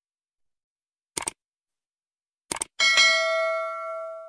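Sound effects of a subscribe-button animation: short mouse clicks about a second in and again about two and a half seconds in, then a notification-bell chime that rings and slowly fades.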